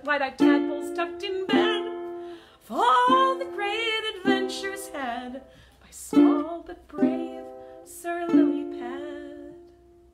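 Ukulele strummed in a slow tune, a chord about every second, each ringing and decaying. The last chord rings out and fades away near the end.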